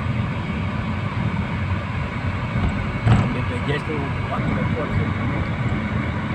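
Steady low road and engine noise of a moving car, heard from inside the cabin, with faint voices briefly about halfway through.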